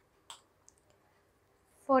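A single short, sharp lip smack about a third of a second in, as lipsticked lips pressed together part, followed by a couple of fainter small ticks. Near the end a woman starts saying "forty-eight".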